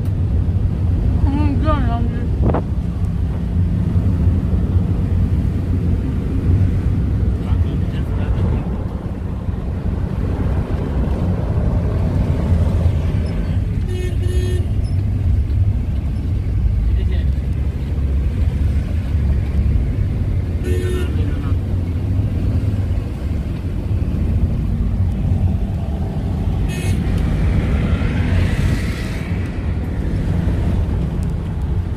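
Steady engine and road rumble inside a moving van's cabin on a highway, with short vehicle horn toots about 14 and 21 seconds in and again near the end.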